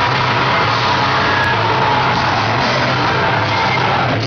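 Heavy metal band playing live: loud, dense distorted electric guitars and bass guitar, steady without a break.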